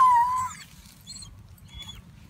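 Borzoi crying out in pain when its hind leg is lifted: one sudden, high-pitched cry lasting about half a second, then two faint high squeaks. The pain comes from the hind leg, which has a bacterial joint infection.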